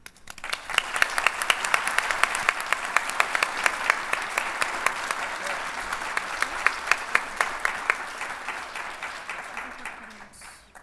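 Audience applauding. The applause swells within the first second, holds steady with sharp individual claps standing out, and dies away near the end.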